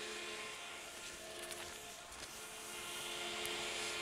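Bank of axial fans, EC and AC motor driven, running steadily at half airflow: a quiet, even whir with faint steady hum tones.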